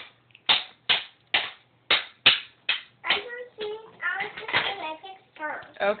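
A child striking a hand-held block loudly (forte), about six sharp knocks at roughly two a second that stop about three seconds in. A child's voice follows.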